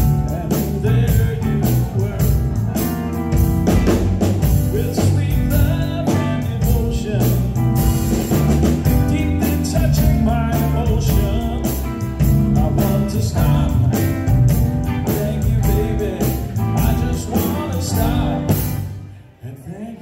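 Live band (electric bass, electric guitar, keyboards and drum kit) playing an upbeat soul-rock song with a steady beat. About a second before the end the band stops briefly, then comes back in.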